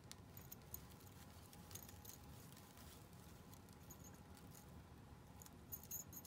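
Near silence: faint rustling and light clicks of hands handling a sheer mesh gift bag with a crochet doily cluster and a small jingle bell attached, the bell giving a faint jingle near the end.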